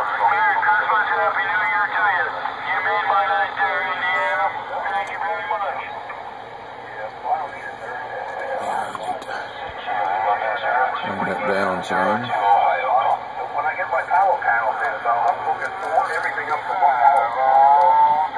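Voices of other stations coming through the RG-99 radio's speaker as it receives on-air transmissions, the talk narrow and thin like radio audio. The signal holds steady without chopping or motorboating, a sign that the AGC circuit is now working.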